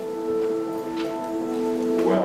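Soft background music from an electric guitar: sustained, ringing chords that shift once or twice.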